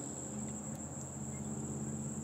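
Crickets trilling steadily in a continuous high-pitched drone, over a faint low hum.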